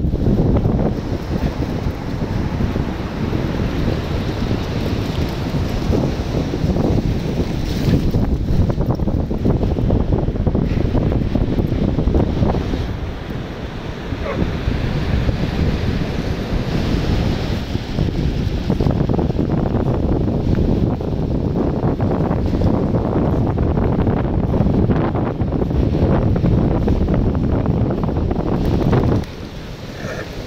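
Strong wind buffeting the microphone, a loud, continuous low rumble, with surf breaking behind it.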